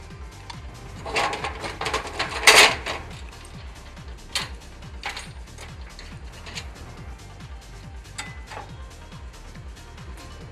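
Metal clanks and rattles as aluminium base feet are fitted onto a Beta Max Maxial scaffold hoist track and fastened with quick bolts, loudest about two and a half seconds in, followed by a few scattered clicks. Background music plays throughout.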